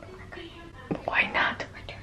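Whispered speech over faint background music, with a single click just before the whispering.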